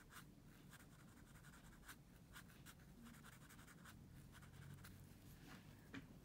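Faint scratching of a felt-tip marker on paper, drawing a run of short, quick strokes.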